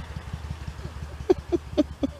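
A vehicle's engine running nearby: a steady low rumble with a fast, even pulse. A man's short laughs come in the second half.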